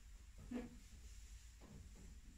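Near silence: low steady room hum, with one faint, brief sound about half a second in.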